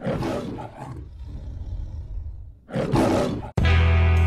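Lion roaring in the MGM logo intro: a rough roar fading away over the first second, then a second, shorter roar near the end. Music with a heavy bass line cuts in abruptly just before the end.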